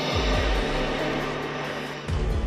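Horror film score: a dense, mechanical-sounding noisy layer over held low notes, with one deep falling bass hit just after the start.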